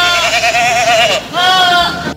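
Goat bleating twice: a long, quavering bleat, then a shorter one about a second and a half in.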